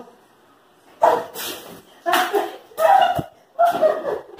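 Short wordless vocal outbursts from women, four in quick succession after a second of quiet, with a single sharp smack about three seconds in.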